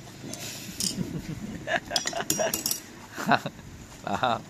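Several light metallic clicks and clinks, bunched in the middle: pliers and metal hog-ring clips working against a car seat's steel spring frame as a leather seat cover is fastened on.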